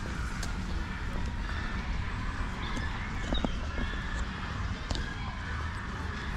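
Outdoor park ambience heard while walking: a steady low rumble with faint distant voices, a few short chirps and occasional light clicks.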